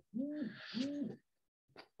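Two short hoot-like sounds in a row, each rising and then falling in pitch, quieter than the speech around them.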